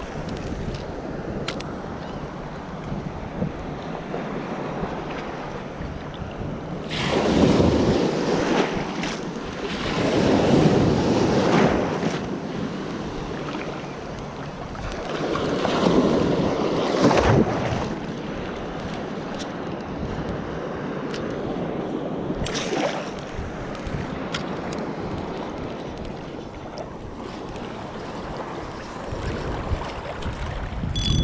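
Ocean surf washing around a wading angler, with wind buffeting the microphone; the rush swells much louder three times, roughly every few seconds in the first half, then settles back to a steady wash.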